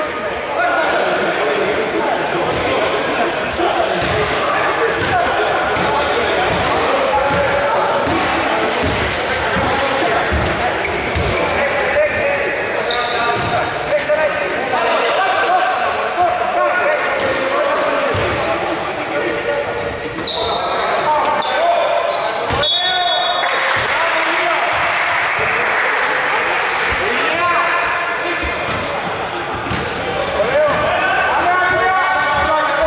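A basketball bouncing on a hardwood court in a large hall, mixed with players' voices calling out and short high squeaks scattered through the play.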